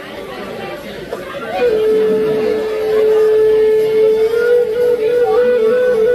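Native American flute holding one long, clear note that starts about a second and a half in, then stepping back and forth between two neighbouring notes near the end. Crowd chatter runs underneath.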